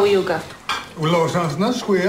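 Cutlery clinking against china plates at a dinner table, with a voice talking over it.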